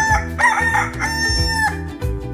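A rooster crowing once: a few short notes leading into a long held note that stops shortly before the end. Background music with a steady beat plays underneath.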